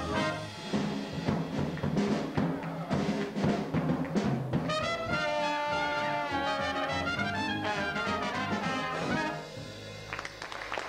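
Traditional jazz band playing live, with trumpet, trombone and clarinet over piano and drums, in the final bars of the tune. Sharp drum strokes punctuate the first half, the horns then hold long notes together, and the music stops about nine seconds in.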